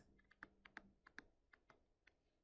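Faint, irregular light clicks and taps of a stylus on a tablet screen while a word is handwritten, about eight in the space of under two seconds.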